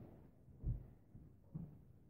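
Three dull, low thumps, just under a second apart, over faint room tone.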